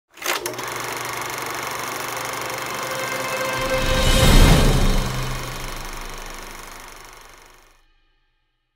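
Logo-animation sound effect: a sharp click, then a steady mechanical rattle over a low hum that swells to a peak about four seconds in and fades out near the end.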